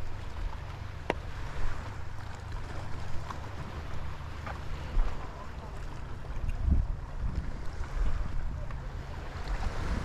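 Wind buffeting the microphone in gusts, with waves lapping against the rocky shore beneath it. A single sharp click about a second in.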